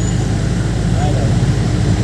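Jeepney engine running steadily with a loud low rumble, heard from inside the moving jeepney.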